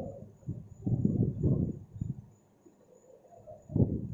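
Marker writing on a whiteboard: a run of short scratchy strokes and knocks against the board in the first half, a lull, then one more brief knock near the end.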